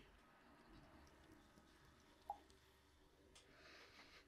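Near silence: room tone, with one faint short tick about two seconds in.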